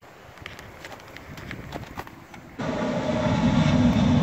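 Airplane flying over, a loud steady rumble with a low droning hum that comes in suddenly about two and a half seconds in. Before it, faint outdoor background with a few light clicks.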